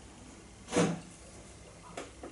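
A single short mouth sound from someone drinking beer from a glass, about a second in, against a quiet room.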